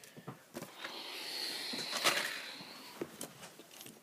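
Soft rustling and scraping as a small toy train is handled and moved about against fabric, with a few light clicks and one sharper click about two seconds in.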